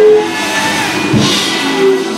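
Church band music: sustained organ chords with a drum hit and cymbal crash a little over a second in.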